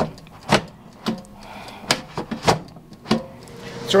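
Sharp plastic clicks and knocks, about six of them at uneven spacing, from a hand working the front of a Gourmia GAF375 air fryer: its timer dial and basket handle being set and handled as cooking starts.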